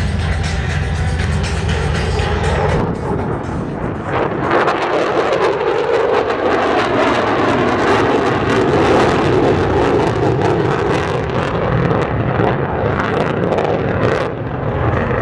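Rockwell B-1B Lancer's four afterburning turbofan engines in a display pass: a loud rushing jet noise that swells about four seconds in and holds steady. Steady music is heard for the first three seconds.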